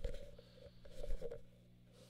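Handling noise of a camera being moved and set down on carpet, with a knock about a second in, over a steady low hum from the valve guitar amp.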